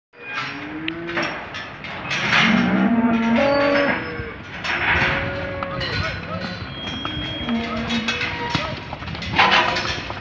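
Several Holstein-Friesian cattle mooing, their calls overlapping, loudest about two to four seconds in and again near the end, with scattered short knocks between the calls.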